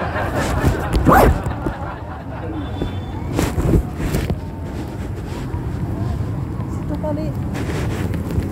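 Indistinct, distant voices of people talking over a steady outdoor background rumble.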